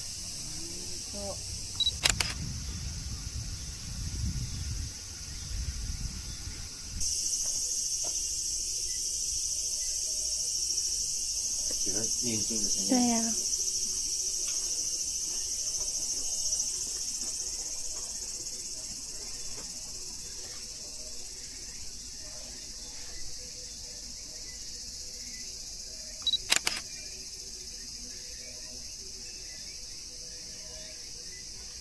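A steady, high-pitched chorus of insects, much louder from about seven seconds in, with a sharp click near the start and another near the end.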